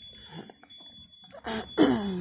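A woman clearing her throat, with a short, noisy cough-like burst near the end after a quieter stretch. She puts it down to the very cold weather.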